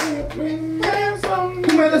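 A man's voice singing a few drawn-out notes of a rock tune, with slaps of hands.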